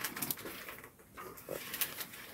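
Faint rustling and soft scattered clicks of thin Bible pages being handled.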